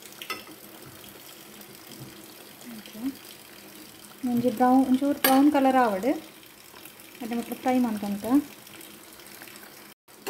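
Masala vadas (lentil fritters) deep-frying in hot oil in a pan, a steady sizzle and bubbling. A person's voice rises over it twice, about four seconds in and again near the eight-second mark.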